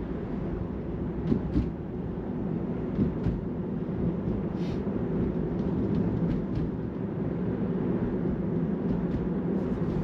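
Steady low road and tyre rumble inside the cabin of a Tesla electric car cruising on an open road, with a few faint clicks.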